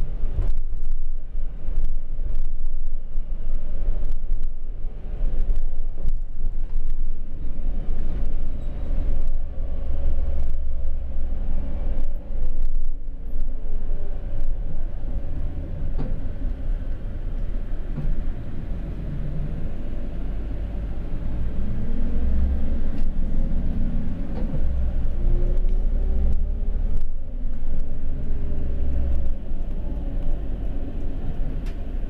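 Cabin noise inside a van-based minibus on the move: a steady low engine and road rumble. Frequent small knocks and rattles run through it, and the engine note glides up and down a few times as the bus changes speed.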